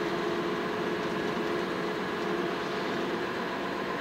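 Hino truck cab interior while driving: steady engine and road noise, with a low hum that fades away about halfway through.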